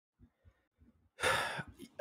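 Near silence for about a second, then a person's breath into a close microphone, lasting about half a second.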